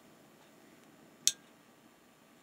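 A single short click about a second in, over faint room tone.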